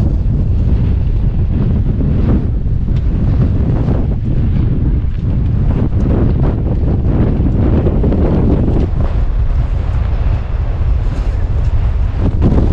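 Strong wind blowing across the microphone, a steady low rumble that rises and falls in gusts.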